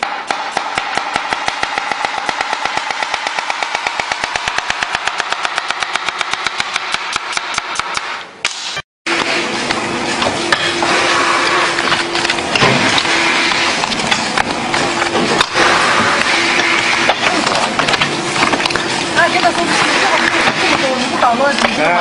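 A kitchen knife chopping vegetables on a cutting board in a fast, even rhythm, which stops abruptly about eight and a half seconds in. After that come playing cards being handled and packed quickly by hand, with cards slapping and rustling over a steady hum and voices.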